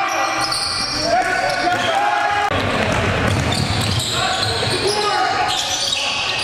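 Live sound of an indoor basketball game: a basketball bouncing on a hardwood gym floor, with players' voices echoing in the hall.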